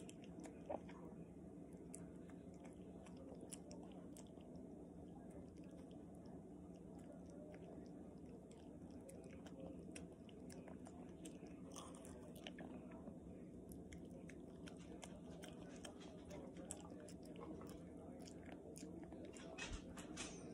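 A Chihuahua chewing and licking soft wet food from a hand: faint, wet mouth clicks and smacks, busier about halfway through and again near the end.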